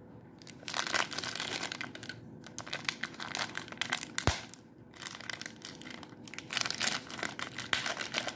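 A clear plastic bag of small brass screws and fittings crinkling in irregular bursts as it is handled, with one sharp click a little past halfway.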